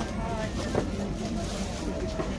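Overlapping background chatter of shoppers at a crowded market stall, over a steady low rumble on the microphone. A brief knock sounds about three-quarters of a second in.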